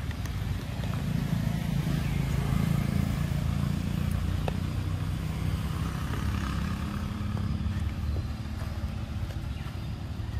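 Low, steady rumble of a motor vehicle engine running, a little louder around two to three seconds in.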